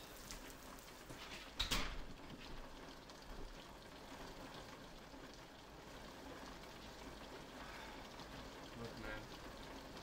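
Steady rain falling, with a single sharp thump about two seconds in.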